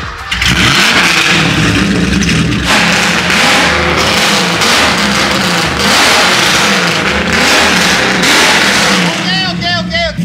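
Porsche 928 race car's V8 engine revved hard again and again, very loud, its pitch climbing and falling with each blip. A man's voice breaks in near the end.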